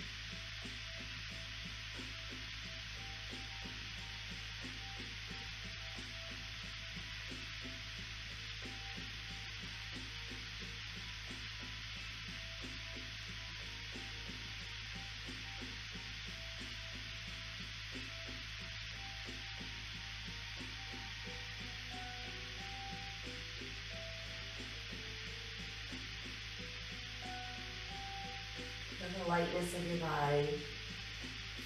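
Faint, slow background music of sparse soft notes under a steady hiss and a low hum.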